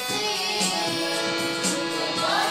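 Instrumental passage between sung lines: harmonium and electronic keyboard playing sustained chords and one long held note over a steady beat.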